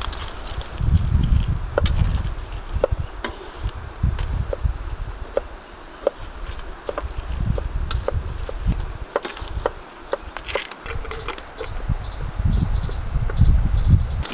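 Large knife chopping vegetables on a wooden cutting board: irregular sharp knocks, several in quick succession at times, over a low rumble.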